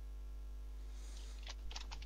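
Steady low hum in the background, with a few sharp clicks starting about one and a half seconds in.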